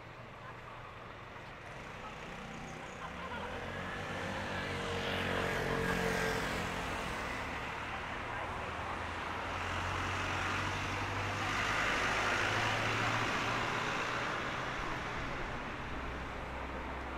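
Street traffic: a vehicle's engine swells and passes, loudest about six seconds in, then a second vehicle swells by around twelve seconds in, over a low steady road hum.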